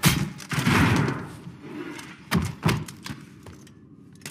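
A sharp blaster shot with a hissing tail, then two heavy thuds close together about two seconds later as a body drops to the floor.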